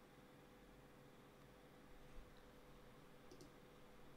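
Near silence with a faint steady hum, and two quick computer mouse clicks close together near the end.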